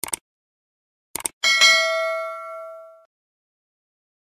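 Subscribe-button sound effect: two quick mouse clicks, two more about a second later, then a bright notification-bell ding that rings out and fades over about a second and a half.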